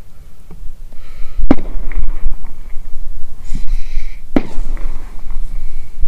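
Two sharp bangs about three seconds apart, over a steady low rumble.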